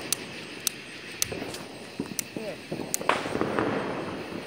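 Firecrackers popping: a string of sharp, faint cracks, roughly one every half second.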